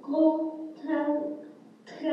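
A voice chanting a rhythmic rhyme in separate syllables, each held at a fairly steady pitch, with a sharp click just before the end.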